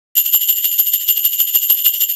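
A small metal bell ringing in a fast trill of about eight strikes a second, with a few high steady tones, starting a moment in.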